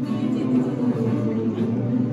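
A group of men singing a gospel song together, accompanied by a strummed acoustic guitar.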